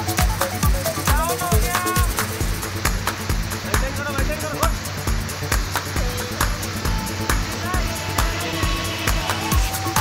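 Background electronic dance music with a steady kick-drum beat.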